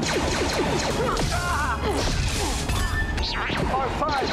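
Soundtrack of a science-fiction TV fight scene: music under a dense run of crashes and blows, with many short falling electronic zaps from the weapons.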